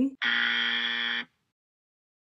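Game-show wrong-answer buzzer sound effect: one steady buzz lasting about a second that cuts off suddenly, marking an incorrect guess.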